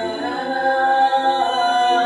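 Several women's voices singing long, held notes in a cappella harmony, layered with live-looped vocal parts.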